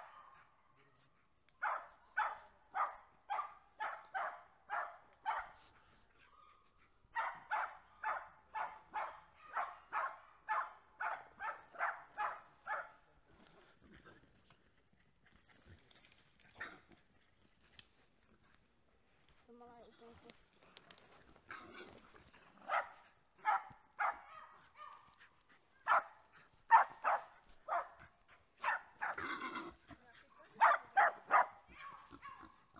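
Small hunting dog barking at a wild boar in fast runs of about two to three barks a second, with short pauses between runs. The barks thin out in the middle and come thick again near the end.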